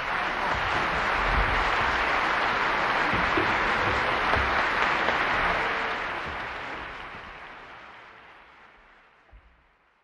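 Audience applause: a dense, steady patter of many hands clapping that holds for about six seconds, then fades away over the last four.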